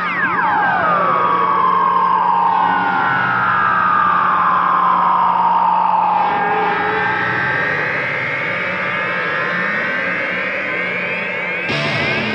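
Soundtrack music mixed with motorcycle engines revving, heard as sweeping changes in pitch. The pitch falls slowly through the first half and rises again toward the end.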